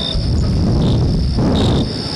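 Crickets chirping: a steady high trill with a few short, louder chirps, over a low rumble of hall noise.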